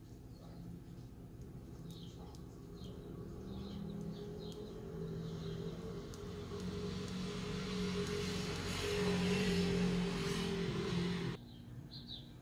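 A low engine hum grows steadily louder over several seconds, then cuts off suddenly near the end.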